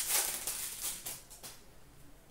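Trading cards and a pack wrapper being handled: dry rustling and flicking of card stock, loudest at the start and fading away by about a second and a half in.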